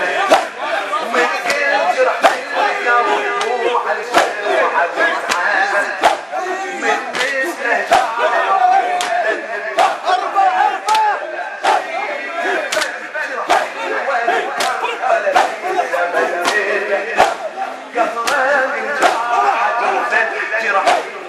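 Latmiya mourning chant: a male reciter chants an elegy into a microphone while a crowd of men chant with him. Sharp chest-beating slaps keep time about once a second.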